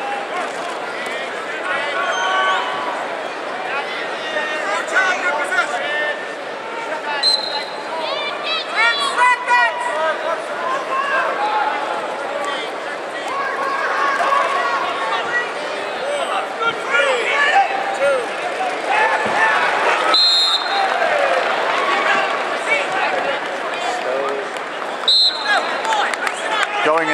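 Arena crowd and coaches shouting over one another during a wrestling bout, a dense mix of many voices. A referee's whistle blows briefly a few times, the last near the end.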